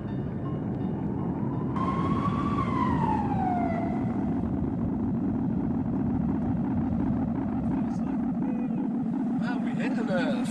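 Ambient sound-collage passage of a mashup album track: a dense, steady low rumble with a single tone that rises slightly and then glides down, about two to four seconds in. Voices come in near the end.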